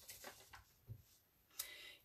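Near silence: room tone with a few faint soft sounds, and a faint breath near the end.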